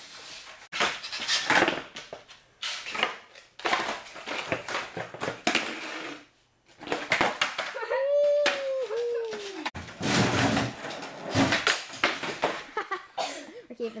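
Skateboard wheels rolling and boards clattering on a concrete floor, heard as a string of short noisy passes broken by abrupt edit cuts. About eight seconds in, a short high whining cry rises and falls.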